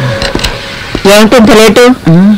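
Film dialogue: after about a second of quieter background noise, a man's voice speaks loudly in Telugu.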